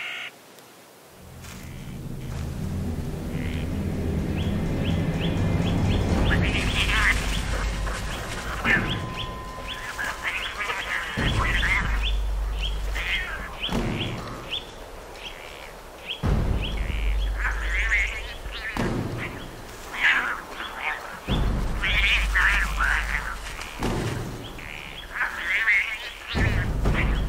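Wildcats scuffling, with harsh, snarling calls in repeated bursts. The mother is driving off her five-month-old kits.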